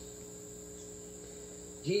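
Steady high-pitched chirring of insects, crickets, with a faint low steady hum under it.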